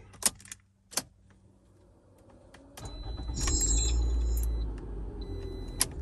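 A key clicks into a Toyota RAV4's ignition, and about three seconds in the engine cranks and starts on the original, immobilizer-recognised key, flaring up loudly and then settling to a lower idle. Keys jingle and click near the end.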